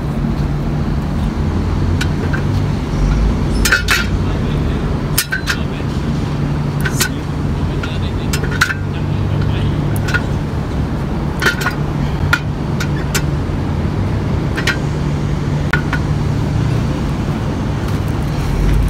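Metal clinks from a homemade leg-extension machine, its steel pipe and pivot knocking as the concrete weight swings through repetitions. The clinks come about every one to two seconds, over a steady low traffic hum.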